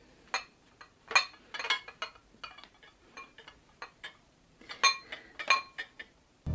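A china bowl on a serving tray clinking as it is handled: a scattered series of short, ringing clinks, the loudest about a second in and twice near the end.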